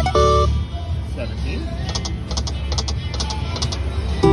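Konami Tiki Heat video slot machine: its win jingle stops about half a second in, then a new spin runs with a series of light electronic ticks as the reels turn and land, over steady casino background din.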